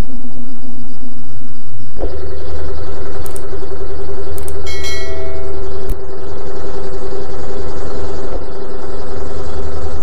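A loud, steady machine-like hum that shifts to a different pitch about two seconds in. Around the middle come a few sharp clicks and a short bell-like ding.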